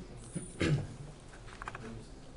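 A man's short cough, about half a second in.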